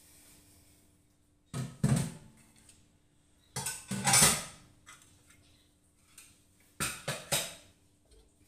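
Kitchen pots, dishes and utensils clattering in three short bursts: about a second and a half in, about four seconds in, and near the end, where a steel wok is being taken hold of and lifted from the gas stove.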